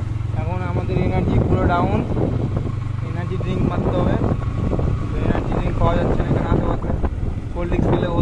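Motorbike engine running steadily while riding, with wind buffeting the microphone; the low engine hum is strongest in the first few seconds. A man's voice comes through in short snatches.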